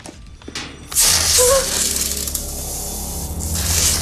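Clothes iron hissing against bare skin, a loud steady hiss that starts about a second in and lasts about two and a half seconds, over a low steady drone.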